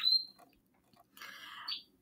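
Pet bird giving two short, faint chirps, one at the very start and another from just past a second in that ends on a brief rising high note.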